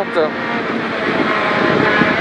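Peugeot 208 R2 rally car's 1.6-litre four-cylinder engine running hard at speed, with tyre and road noise on tarmac, heard from inside the stripped cabin.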